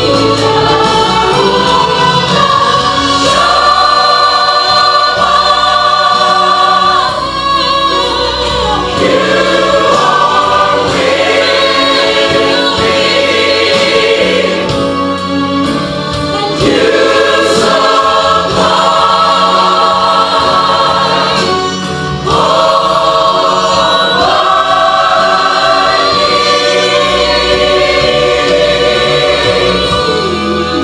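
A church choir singing a gospel song, in sustained phrases with a short break between them about 22 seconds in.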